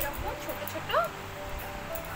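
Steady background music, with a short, high, rising animal call about a second in.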